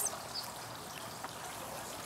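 Steady faint background hiss of outdoor ambience, with a few faint light ticks.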